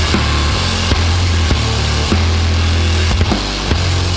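Loud, distorted post-punk / noise-rock band playing the song's instrumental ending: a dense wall of guitar noise over heavy bass, with drum hits landing every half-second to second.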